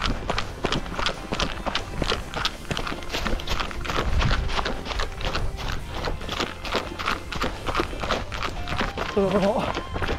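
Running footsteps on a gravel and leaf-littered trail, a steady beat of about three steps a second. A voice comes in near the end.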